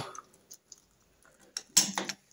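Small metallic ticks and clinks as the loosened contact-breaker (points) plate is handled in the timing case of a Norton Commando engine: a few faint ticks, then a sharper cluster of clicks near the end.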